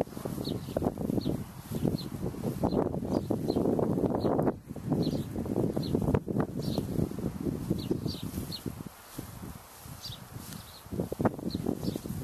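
Wind buffeting the microphone in gusts, with short high chirps repeating every half second or so.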